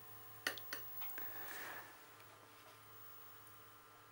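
A few light clicks of a paintbrush against a ceramic palette, then a brief soft swishing as the brush mixes watercolour paint in a well, over a faint steady hum.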